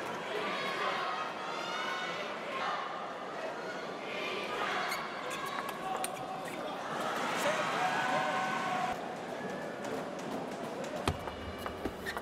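Arena crowd shouting and cheering in waves over a steady hum of the hall, with a few sharp clicks of a table tennis ball struck and bouncing during a rally.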